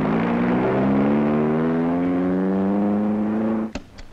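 Car engine accelerating, its pitch rising steadily, then cut off abruptly with a click near the end.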